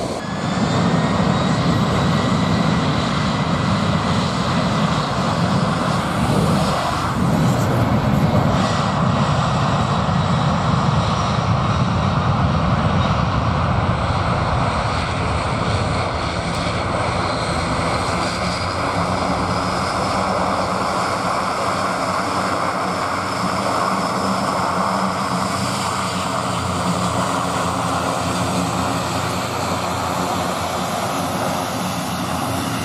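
Four jet engines of a Boeing 747-400 freighter running at high power: a loud, steady jet noise with a high whine over it. The sound changes in character about halfway through.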